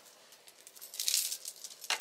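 Faint jingling and clinking of metal chain necklaces being handled and laid into a foam-lined jewelry tray, starting about half a second in.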